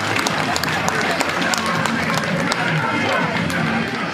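A large crowd applauding, many separate hand claps standing out over a dense wash of crowd noise and voices.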